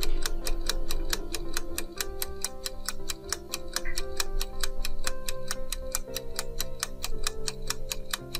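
Rapid, even clock-like ticking of a countdown-timer sound effect over soft background music with held notes.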